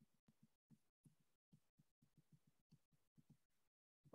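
Near silence, with only very faint, irregular low pulses.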